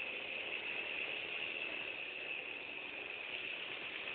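Steady high-pitched buzz that holds at one pitch throughout, over faint background noise.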